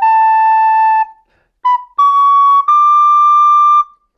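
Soprano recorder playing a slow rising line: a held A, then after a short breath B, C-sharp and high D in a short-long-long rhythm, the last note the longest.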